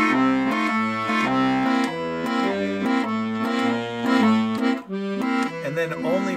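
Petosa piano accordion's left-hand Stradella bass buttons playing a slow, steady blues walking bass line. Single bass notes step along and alternate with short chords: bass, chord, bass, chord.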